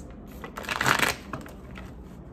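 A deck of tarot cards being shuffled by hand: a short rustling burst of cards about half a second in, followed by a few light card clicks.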